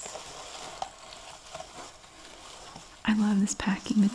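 Crinkling and rustling of metallic shred filler and a cellophane wrapper being handled in a cardboard mailing box. Near the end a woman's voice comes in, louder than the rustling.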